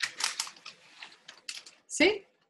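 An irregular run of small clicks and rustles, ending in a louder knock: painting supplies being handled on the work table.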